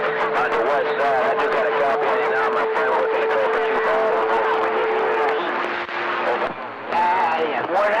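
CB radio receiver on channel 28 carrying several garbled, overlapping AM voices over skip, with a steady whistle from carriers beating against each other. The whistle drops to a lower pitch about five seconds in and stops about a second later, just before a clearer voice comes in near the end.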